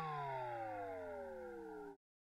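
Electronic tone made of several pitches sliding steadily downward together and slowly fading, then cutting off suddenly near the end: a closing sound effect.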